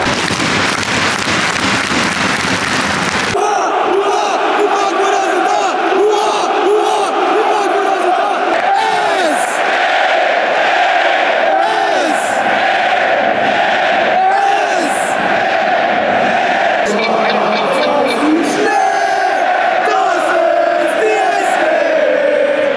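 A large block of football supporters singing a chant together, thousands of voices in unison. For the first three seconds the singing is drowned under a loud crowd roar.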